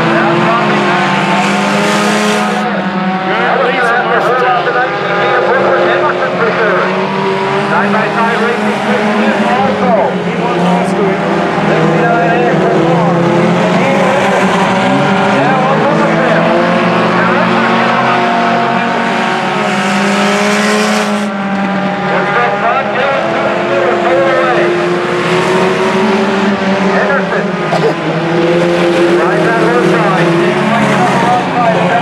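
A field of IMCA sport compact race cars, small four-cylinder engines, racing around a dirt oval. Several engines are heard at once, their pitches rising and falling as drivers get on and off the throttle and the cars pass.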